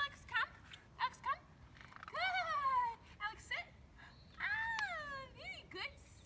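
High-pitched vocal sounds: short swooping chirps, then two long calls that fall in pitch, about two and four and a half seconds in, with a few more quick chirps near the end.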